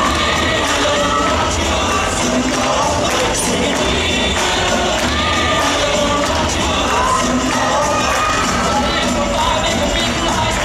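Spectators, many of them children, cheering and shouting continuously over rock and roll dance music with a steady beat.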